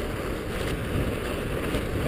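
Mountain bike rolling over a trail in fresh snow, a steady noise of tyres and riding, with wind rumbling low on the camera microphone.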